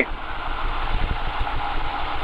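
Single-engine propeller of a Van's RV-6A idling steadily after the run-up, heard inside the cockpit as a continuous low rumble.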